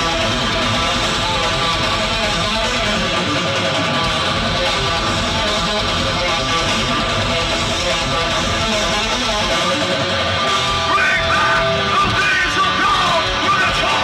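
A metalcore band playing live through a festival PA, heard from within the crowd: heavily distorted electric guitars and drums. A few sliding high notes come in near the end.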